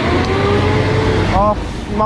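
Riding noise: low wind and road rumble, with a vehicle engine's hum rising slowly in pitch as it speeds up. A man says "Oh" about one and a half seconds in.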